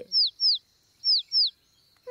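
Cartoon baby bird chirping: four short, high chirps, each falling in pitch, in two quick pairs. They are the calls of a hungry chick calling for its mother.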